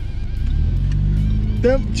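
Jaguar F-Type engine running, its note rising slowly as the revs climb, under background music. The car is not moving off because its handbrake has been left on.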